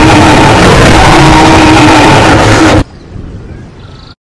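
Loud, rough dinosaur roar sound effect for a Lego Giganotosaurus, cutting off sharply about three seconds in and leaving a faint tail.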